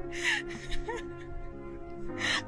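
Background music of long held tones, with a man's short breathy laugh near the start followed by a few quick chuckles.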